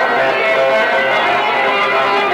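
Bağlama (long-necked Turkish saz) playing an instrumental passage of plucked notes.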